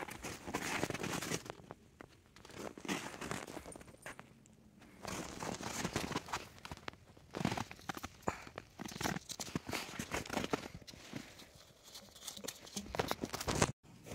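Footsteps crunching in snow and the rustle of a gloved hand and clothing, coming in irregular bursts with short pauses between.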